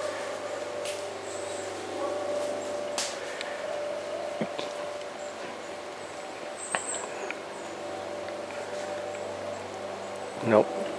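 Quiet woodland ambience: a steady faint hum with a few soft, scattered clicks and snaps, and no grouse drumming to be heard.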